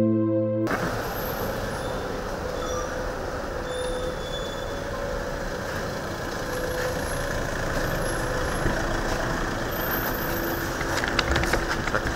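A car's engine running as it pulls up, over a steady outdoor hum with a few faint bird chirps. Near the end come sharp clicks and knocks as the car's door is opened.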